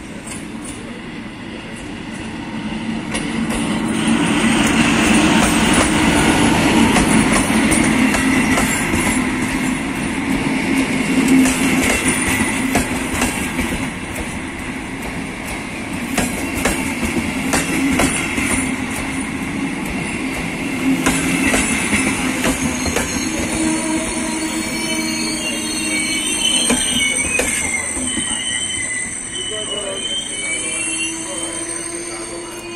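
A MÁV class V43 electric locomotive and its InterCity coaches rolling past an arriving train's platform. A steady rumble of wheels on rail carries repeated clicks over the rail joints, growing louder a few seconds in as the locomotive draws level. In the last several seconds thin high squeals come in as the train slows to stop.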